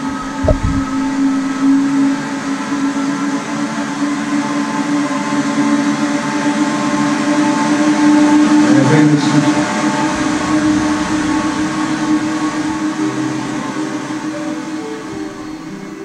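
Sonification of ATLAS particle-detector data: a steady electronic drone of held tones over a hiss, swelling towards the middle. There is a low thump about half a second in, and separate short notes begin near the end.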